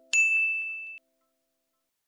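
A single bright bell ding sound effect, ringing for about a second and then cutting off sharply.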